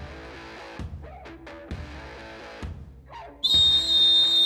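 Quiet intro music with soft plucked notes and light percussive hits, then about three and a half seconds in a loud, long, steady blast of a referee's whistle, signalling the kickoff.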